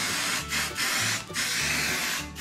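Aerosol spray-paint can hissing as paint is sprayed onto paper, in three bursts with short breaks between them.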